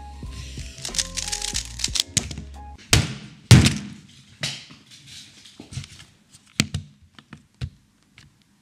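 Hands slammed down hard onto a StackMat speedcubing timer's pads on a table: two heavy thuds about half a second apart, then a few lighter knocks. Background music with a bass beat plays under the first couple of seconds.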